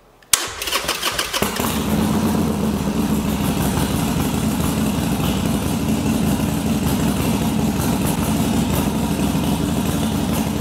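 Motorcycle engine being jump-started off a portable lithium jump starter, its battery flat after the bike has sat and failed to start. The starter cranks it briefly, and about a second and a half in the engine catches and runs steadily.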